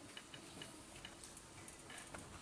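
Near silence in a hall during a pause in Quran recitation, with a few faint, scattered ticks.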